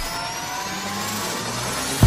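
A rising whoosh transition sound effect: a steady rush of noise with tones gliding slowly upward in pitch.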